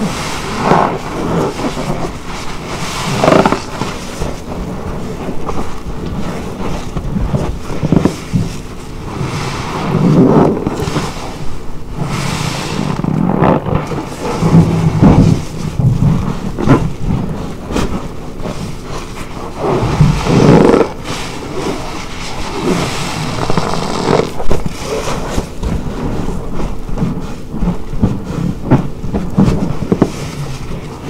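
Car wash sponge squeezed and kneaded by gloved hands in a basin of thick detergent foam: wet squelching of foam and soapy water, in irregular surges a few seconds apart.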